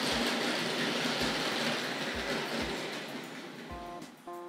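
Hornby Dublo three-rail model locomotive running along the track and slowing to a stop, its motor and wheels making a steady rushing noise that fades away, with a few low thuds. Background music comes in near the end.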